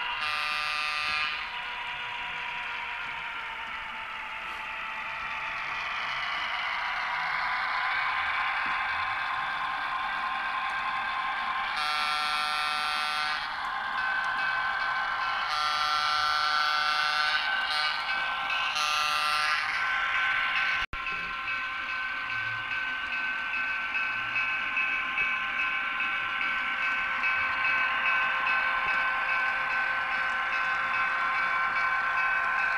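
Sound decoder in an HO scale diesel switcher locomotive, playing through its small onboard speaker. A steady diesel engine running sound carries through, with a horn blast at the start and several more horn blasts between about 12 and 20 seconds in.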